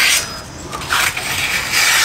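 A chef's knife slicing through a sheet of printer paper, a cutting test of its freshly sharpened edge: hissing, papery rasps at the start, briefly about a second in, and again near the end.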